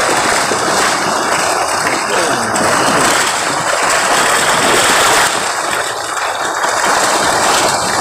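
Water splashing and churning loudly as a mass of milkfish thrashes inside a seine net being drawn in by waders, with voices faintly in the background.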